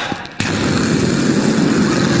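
A man making a loud rumbling noise with his voice into a microphone. It starts suddenly less than half a second in and runs on. It imitates the sound of a stampede of women running.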